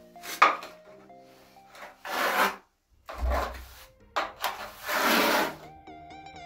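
Steel notched trowel scraping and spreading cement-based tile adhesive across a shower floor, in about five rasping strokes roughly a second apart. Quiet background music runs underneath.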